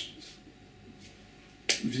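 A quiet pause with only low room tone, then a single sharp click about one and a half seconds in, just before speech resumes.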